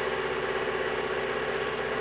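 Mini lathe running steadily in reverse, its motor giving an even, unchanging whine.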